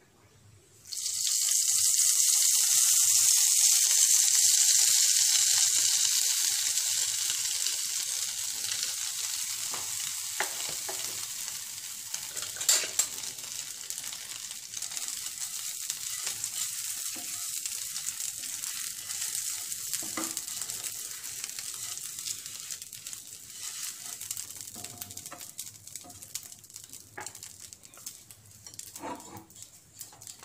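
Butter sizzling in a hot nonstick frying pan: a loud hiss that starts suddenly as the butter hits the pan about a second in, then slowly dies down as a silicone spatula spreads it around. A few sharp clicks are heard over it.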